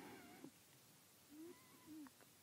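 Near silence, with a few faint, short animal-like calls whose pitch bends: one in the first half-second and a pair late on.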